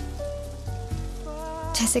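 Steady rain hiss under soft background music of long held notes with a low bass underneath; a man's voice starts just at the end.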